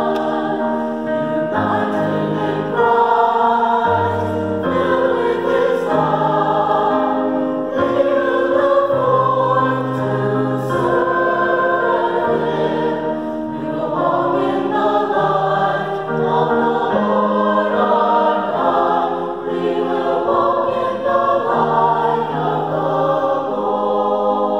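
Mixed church choir singing an anthem in parts, accompanied on a digital piano.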